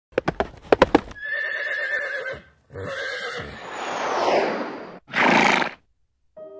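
A horse sound effect: a quick run of about six hoof clip-clops, then a wavering whinny in two parts, a swelling breathy rush and a short breathy blast near the end.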